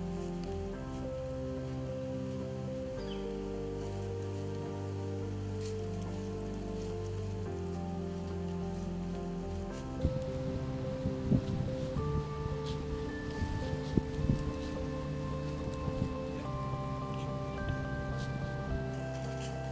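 Background music of sustained, slowly changing chords. From about halfway, irregular crackling and rustling noises come in over it.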